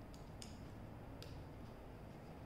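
Plastic LEGO bricks clicking faintly as they are pressed onto a baseplate by hand: three small clicks, the loudest a little under half a second in.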